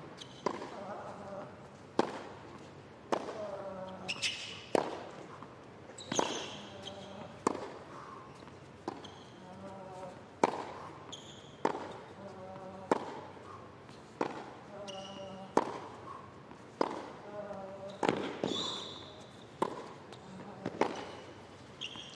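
A long hard-court tennis rally: the ball cracks off the rackets about every second and a half, many shots followed by a short player grunt, with occasional brief shoe squeaks.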